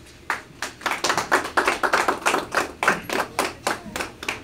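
A small group of people applauding, with separate claps clearly audible. It starts about a third of a second in and runs on.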